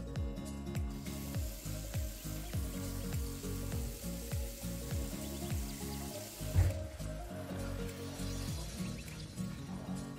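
Water running from a bathroom mixer tap into a ceramic washbasin, starting about a second in and stopping about six and a half seconds in, with a loud thump just as it stops. Background music with a steady beat plays throughout.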